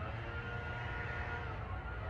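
Steady low background rumble with a few faint held tones above it.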